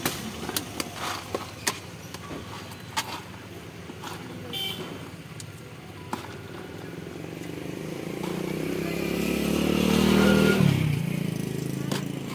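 Scattered light clicks and knocks of plastic jars and a plastic scoop being handled, then a motor vehicle's engine swelling as it passes close by, loudest about ten seconds in and falling away quickly after.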